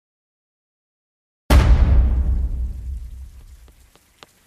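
A sudden crack of thunder, a sound effect opening the song, with a deep rumble that fades away over about two and a half seconds.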